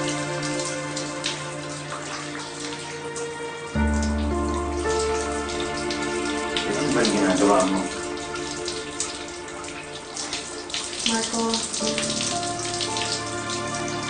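Shower water spraying steadily under a soft music score of sustained chords, which change about four seconds in.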